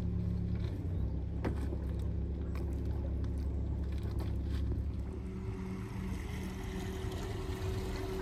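A motor boat's engine running with a steady low rumble and hum. About five seconds in, the deep rumble eases and a higher hum takes over. There is a single sharp click about a second and a half in.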